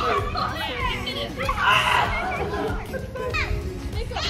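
Children shouting and calling out over one another while playing, with a louder burst of noise about a second and a half in and music underneath.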